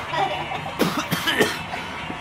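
A person coughing, a short run of several coughs starting about a second in.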